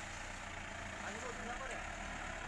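Engine of a 4x4 pickup truck loaded with timber logs, running steadily at low revs as it creeps across the ground, heard from a distance.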